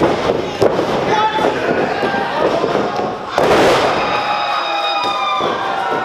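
Wrestlers' bodies slapping and thudding against each other and the ring mat, with a small crowd shouting and cheering throughout. A loud crash comes about three and a half seconds in.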